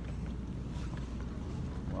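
Low steady rumble of handling and movement noise from a handheld phone microphone carried at a walk, with a few faint knocks.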